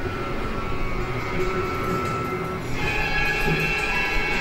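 Film soundtrack playing in a lecture hall: music of long held notes over a low rumble, the notes changing to a higher chord near the end.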